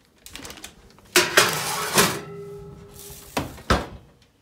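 A metal baking tray clattering as it is put into the oven, ringing briefly after the knocks, then two sharp knocks near the end.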